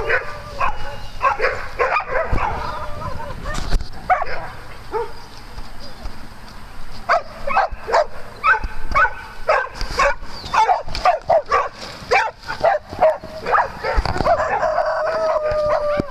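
Several dogs barking and yipping in play, in quick runs of short calls with a lull in the middle, and one longer drawn-out call near the end.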